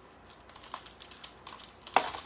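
A stack of Pringles potato crisps being handled, giving light crinkling and scattered small clicks that grow denser, with one sharper click near the end.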